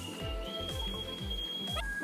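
Background music with a steady beat of low, falling bass notes, about three a second, under a high held tone.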